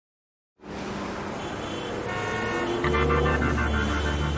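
City traffic noise with car horns sounding, joined almost three seconds in by a deep steady bass tone.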